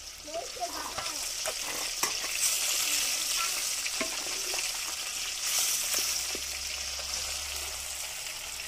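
Fish pieces frying in hot oil in a clay pot, a steady sizzle that swells twice, with the clicks and scrapes of a wooden spatula stirring and turning them against the clay.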